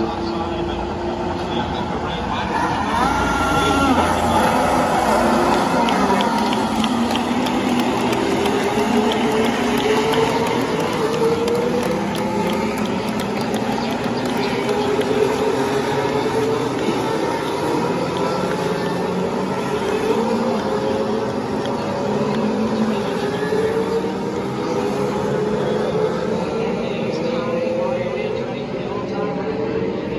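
Several IndyCars' twin-turbo V6 engines running together at low speed, their pitch rising slowly and overlapping as the cars pull away in a group.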